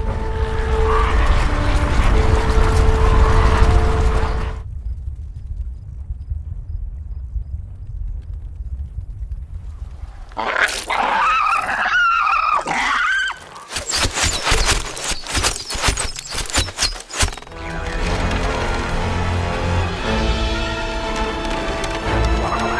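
Animated-film soundtrack. Orchestral music with held notes gives way after a few seconds to a low rumble. About halfway through, cartoon ants make squeaky chattering calls, followed by a quick run of sharp clicks and knocks, and then the music swells back in.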